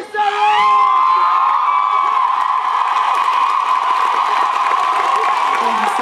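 Concert crowd cheering, screaming and whistling at the end of a song. It bursts in loudly just as the singer's last held note ends and keeps going without a break.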